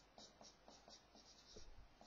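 Marker pen writing on a whiteboard: a faint, quick run of short high strokes as the pen is drawn across the board.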